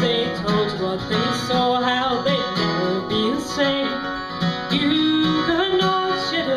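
Acoustic guitar and resonator guitar playing an instrumental break in a bluegrass song, with some sliding notes.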